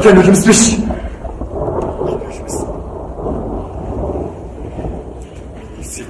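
Thunder rumbling steadily with rain, after a voice that stops about a second in.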